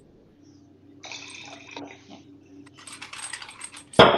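Hand-twisted salt or pepper mill grinding seasoning, in two short spells: one about a second in, and a longer one near the end.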